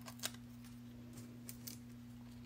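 A few faint ticks and rustles of cardstock and foam adhesive dimensionals being handled and pressed onto a paper oval, over a steady low hum.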